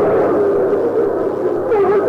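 A chanting voice holding one long, drawn-out note that wavers slowly up and down in pitch, as in a sung supplication (dua).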